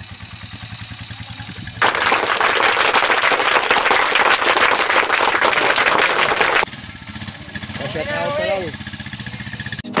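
Rusi 150cc motorcycle's single-cylinder engine idling, then revved hard for about five seconds in a loud run of rapid firing pulses before dropping back to idle. It is running normally after the repair of its stiff kick starter.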